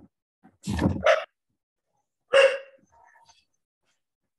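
A dog barking, heard through a participant's video-call microphone: two quick barks about a second in, then one more about a second and a half later.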